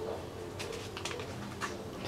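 Quiet room with a faint low cooing in the background and a few soft rustles and taps about halfway through and again near the end.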